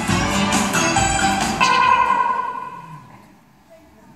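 Instrumental backing music for a stage performance that breaks off about one and a half seconds in, leaving a single held note that fades away to near quiet.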